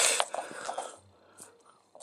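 Soft breathy laughter trailing off, with faint light clicks and taps of small plastic toy figures being handled on a metal display surface, then near silence with one faint tick.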